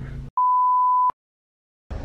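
An edited-in bleep tone: one steady, pure, high beep lasting about three-quarters of a second, with dead silence before and after it.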